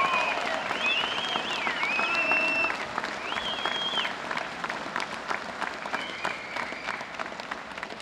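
Audience applauding, with a few voices calling out over the clapping in the first half. The applause thins and fades toward the end.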